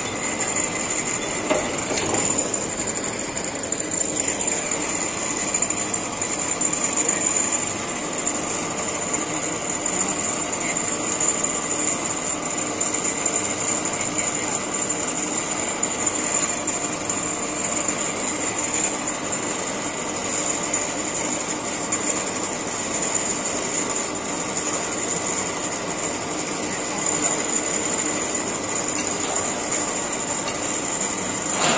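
Gantry crane with an electric hoist running steadily as it carries a stack of concrete railway sleepers: a continuous mechanical hum with a steady high whine over it.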